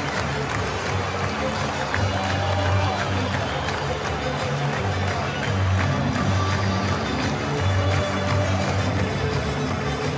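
A large football stadium crowd singing a chant together, loud and steady, with a rhythmic low swell every couple of seconds and scattered clapping.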